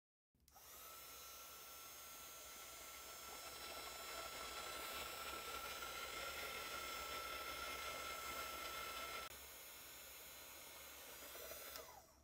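Handheld craft heat tool (embossing heat gun) switched on about half a second in, its fan blowing with a steady high whine while it melts the embossing powder on the card. The whine stops about nine seconds in, leaving a fainter rush of air that ends just before the close.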